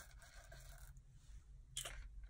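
Faint scraping and handling noise on a cardboard work surface as loose rhinestone flatbacks are sorted by hand, with a short click near the end.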